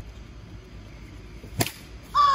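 One sharp crack about a second and a half in: a plastic wiffle ball bat hitting a wiffle ball.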